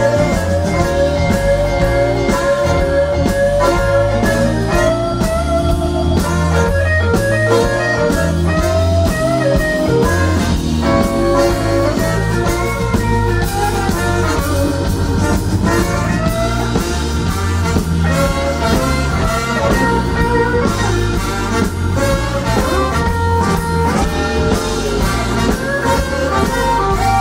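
A live blues band plays on without vocals. A semi-hollow electric guitar takes the lead with bent, wavering notes over bass and drums.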